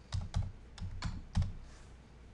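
Computer keyboard being typed on: about five separate keystrokes at an uneven pace over the first second and a half.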